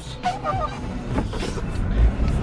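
Car engine idling with a steady low rumble, heard inside the cabin, and a faint short voice sound about a third of a second in.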